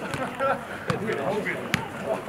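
Two sharp knocks of a football being struck on a training pitch, a little under a second apart, the second louder, with men talking in the background.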